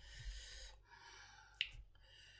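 A person's mouth breathing while eating: a hissing breath in, then a softer breath out, with one sharp click about one and a half seconds in.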